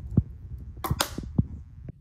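A few short knocks and clicks, with two dull thumps as the loudest and a couple of sharp clicks between them, over a low hum.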